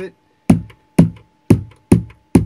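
Vermona Kick Lancet analog kick drum synthesizer playing a steady run of four kicks, about two a second, each a sharp attack with a short low body. Its compressor-like 'Balls' control is dialled in, tightening the kick and giving it punch.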